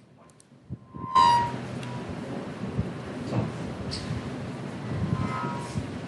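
Lecture-hall room noise: about a second of near silence, then a sudden steady rumbling hiss with scattered shuffling knocks. A short tone sounds as the noise comes in.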